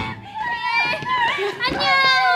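Several young women's high-pitched voices calling out and chattering over one another just after the dance music cuts off, with one voice starting a long held cry near the end.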